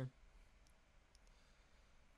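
Near silence: room tone with two faint short clicks about a second apart.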